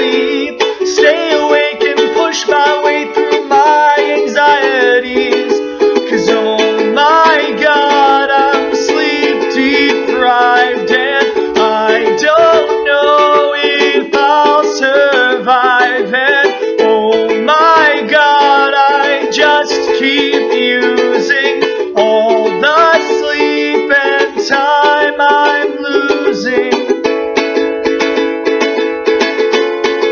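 Ukulele strummed in steady chords with a man singing along, the singing dropping out near the end while the strumming continues.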